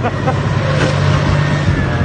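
A tank's engine running steadily under load, a low continuous drone, as the tank drives onto a parked car.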